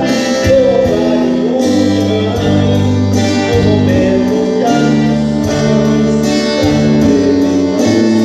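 Live gospel worship music played on guitars, with singing over it and a low line that changes note every second or so.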